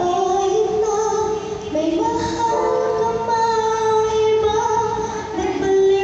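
A young girl singing a Tagalog ballad, holding long notes.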